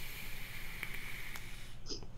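Someone drawing on an e-cigarette: a steady hiss of air pulled through the vaporising atomizer, with a couple of faint crackles, lasting about two seconds and stopping shortly before the end, followed by a short breath.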